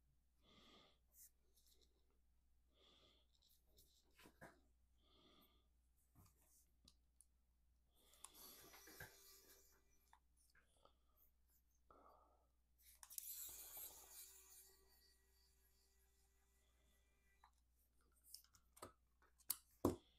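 Quiet handling sounds of a small screwdriver backing screws out of a Bambu Lab X1 Carbon print head's plastic fan housing: two short stretches of soft scraping, then a few small clicks near the end, the sharpest right at the end.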